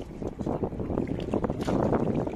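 Wind buffeting the microphone: a dense, uneven rumble, growing a little louder toward the end, over water around small wooden boats.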